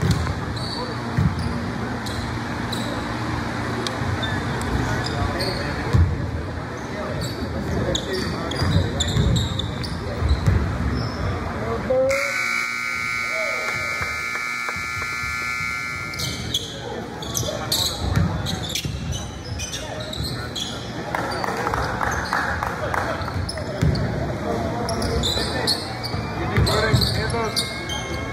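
Basketball bouncing on a gym's hardwood floor amid echoing players' and spectators' voices. About twelve seconds in, the scoreboard horn sounds steadily for about four seconds as the game clock runs out at the end of the period.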